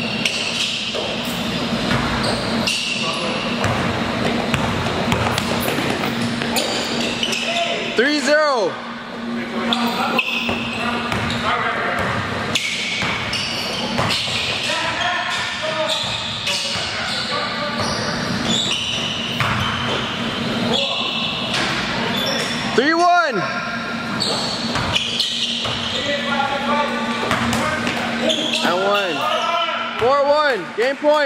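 Basketballs bouncing on an indoor gym court amid sneaker squeaks and players' indistinct calls. Sharp, high squeaks rise and fall in pitch about a third of the way in, again about three-quarters in, and in a quick cluster near the end.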